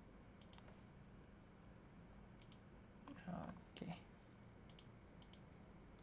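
Faint computer mouse clicks, mostly in quick pairs, a few times, with a short low voice sound just past the middle.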